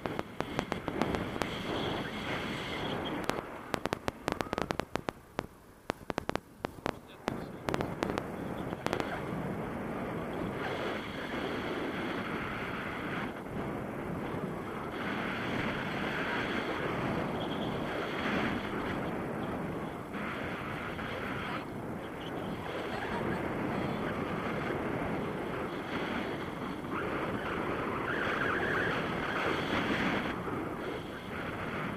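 Wind rushing over an action camera's microphone in paragliding flight. There are rapid crackling clicks through the first nine seconds or so, then a steady rush that swells and eases.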